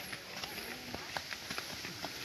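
Footsteps of a crowd walking on a paved path: irregular short taps and scuffs of many feet, with faint voices mixed in.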